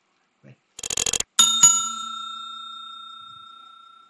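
Subscribe-animation sound effect: a quick rattle of clicks, then a bell struck twice in quick succession, its bright ringing fading out slowly over about two and a half seconds.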